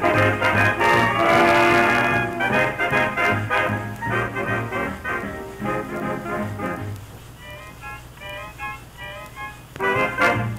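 A 1930s radio dance orchestra playing a swing number with brass, full and loud at first, then thinning out to a few light, high single notes for the last few seconds.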